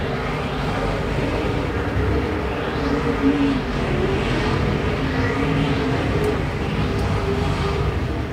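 IMCA Modified dirt-track race cars' V8 engines running at racing speed, several engines blending into one steady sound whose pitch rises and falls as the cars go through the turns and down the straights.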